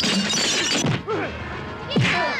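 A loud crash of breaking glass at the start, lasting under a second, over a dramatic fight-scene music score. Falling-pitch cries follow, and another sharp hit lands right at the end.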